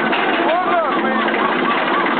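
Roller coaster riders yelling and whooping over the steady rumble of the moving train: one long cry about half a second in, then a quick string of short rising-and-falling cries.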